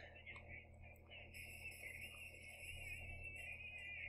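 Near silence: room tone with a faint low electrical hum and a faint, wavering high-pitched sound that grows a little fuller from about a second and a half in.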